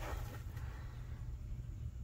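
A quiet pause: only a faint, steady low hum and background noise, with no distinct knocks or tool sounds.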